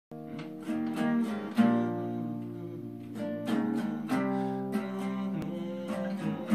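Acoustic guitar playing a strummed chord intro, each chord left to ring before the next.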